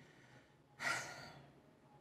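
A woman's single breathy sigh, starting a little under a second in and fading out within about half a second.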